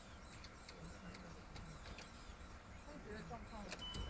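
Faint, low voices of people talking quietly, with a couple of sharp clicks and a brief high beep near the end.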